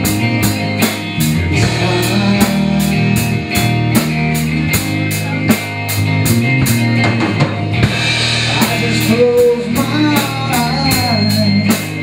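Live rock band playing an instrumental stretch: electric guitar, electric bass and drum kit, with cymbal strokes about four times a second. The cymbal beat breaks briefly about eight seconds in.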